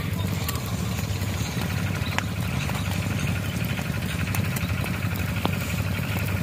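Open fire of dry reeds and straw burning under grilling fish, with scattered sharp crackles and snaps over a steady low hum.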